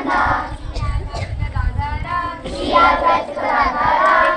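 A group of girls singing a Hindu devotional prayer together in phrases, their voices joined in unison.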